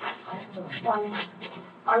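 Faint, indistinct voices murmuring, then a voice begins speaking near the end.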